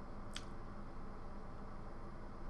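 A pause in speech: a steady low hum of room noise, with one brief, sharp mouth click (a lip smack) about a third of a second in.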